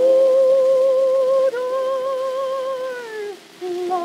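A contralto voice on an acoustic 78 rpm record from 1924 holds a long sung note with steady vibrato. It slides down and breaks off about three seconds in, then takes up a lower note near the end, over the disc's faint surface hiss.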